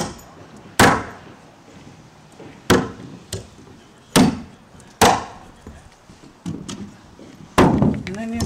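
Framing hammer driving nails by hand into a wooden 2x4 stud, about seven sharp blows at uneven intervals, a few of them lighter taps.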